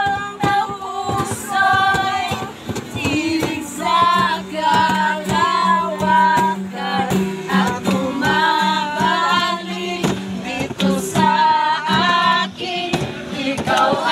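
A group of young people singing together, mostly women's voices with a man's, to a strummed acoustic guitar.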